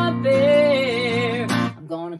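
A woman singing one long held note with vibrato over an acoustic guitar she is playing herself; the note and the chord break off about one and a half seconds in.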